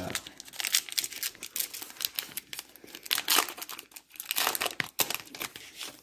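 A trading-card pack wrapper being torn open and crinkled in the hands, a run of irregular crackles.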